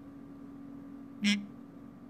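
One short, nasal vocal sound from a woman about a second into a pause, over a faint steady hum.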